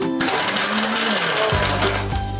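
Electric countertop blender switched on and running, blending a chocolate pop ice drink with a loud whirring noise; a deeper steady motor hum joins about one and a half seconds in.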